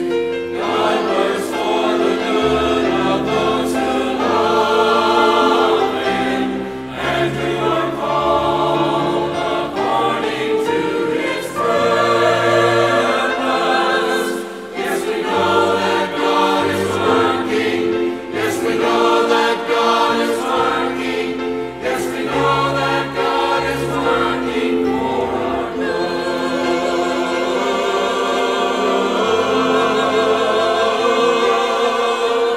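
Mixed church choir singing a sacred anthem in parts, with held low notes from a keyboard accompaniment beneath the voices.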